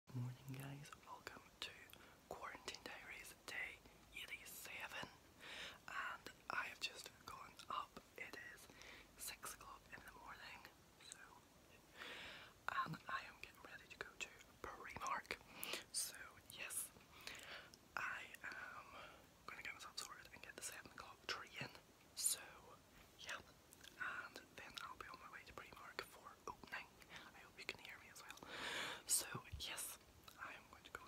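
A man whispering quietly throughout, keeping his voice down so as not to wake a sleeping household.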